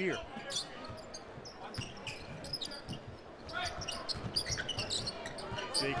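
Basketball being dribbled on a hardwood court during live play: irregular low thuds over the arena's background noise.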